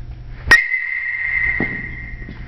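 Aluminum baseball bat hitting a ball: a sharp ping about half a second in, with the bat ringing on at a high pitch for more than a second. A duller thud follows about a second after the hit.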